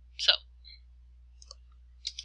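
A short, faint computer mouse click about one and a half seconds in, made while selecting text on screen, over a low steady hum; a single spoken word comes just before it.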